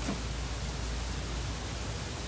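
A steady rushing noise with a low rumble underneath, even throughout.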